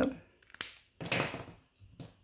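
A few light plastic clicks and taps as a highlighter is handled and set down on a desk, then a brief rustle about a second in.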